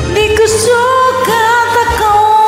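A woman singing a Filipino ballad over a karaoke backing track; her voice slides up at the start, then holds notes with a steady vibrato.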